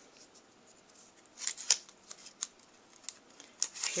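Layers of crumpled cardstock-weight designer paper rustling and crackling as they are handled, in a few short crinkles starting about a second and a half in.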